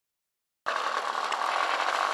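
O.S. .55AX two-stroke glow engine of a radio-controlled model airplane, turning a 12x7 propeller and running steadily. It cuts in suddenly about two-thirds of a second in.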